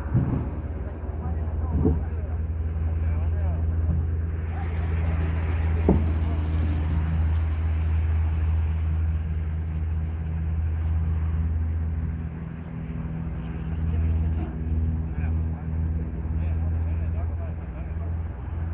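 Crawler excavator's diesel engine running steadily, with a few sharp knocks as old wooden railway sleepers are dropped into its bucket. The engine note eases and wavers about two-thirds of the way through.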